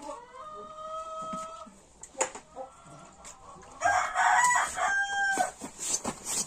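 A rooster crowing twice: a fainter, steady crow lasting about a second and a half at the start, then a louder, harsher crow about four seconds in that ends on a held note. A single sharp knock comes about two seconds in.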